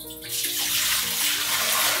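Water poured from a stainless steel bowl into a wok, a steady splashing stream that builds up about half a second in.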